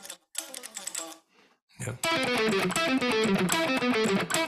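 Electric guitar: a few faint picked notes, a brief pause, then from about two seconds in a loud, fast run of picked notes stepping mostly downward in pitch, the E harmonic minor alternate-picked sweep lick.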